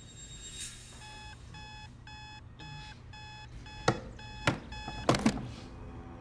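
Electronic alarm clock beeping in a rapid repeating pattern of short tones. Near the end come four sharp knocks, the loudest sounds, and the beeping stops.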